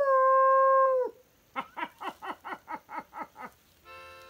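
A canine howl held on one steady pitch for about a second, then dropping away, followed after a short pause by a quick run of about ten short falling yips. A steady synth note comes in near the end.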